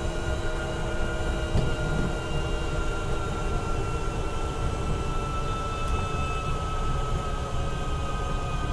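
GEM E4 electric car's drive motor whining steadily while cruising, its thin high whine sinking slightly in pitch as the car eases off from about 20 mph, over a dense low road rumble heard from inside the cab.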